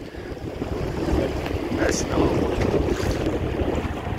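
Wind buffeting the microphone, with small waves lapping in shallow sea water.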